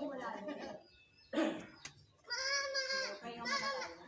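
Voices at a swimming pool, then a short sharp sound, then a young child's long high-pitched, wavering cry from about halfway through, bleat-like in its quaver.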